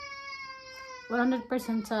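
A long, high-pitched drawn-out wail, held steady and slowly falling in pitch, that stops about a second in; a woman starts talking right after.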